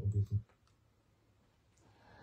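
Television news speech in German cuts off about half a second in as the broadcast is paused, leaving near silence with a few faint clicks.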